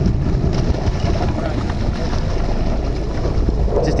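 Steady wind rumble on the microphone over the running sportfishing boat and water washing along its hull.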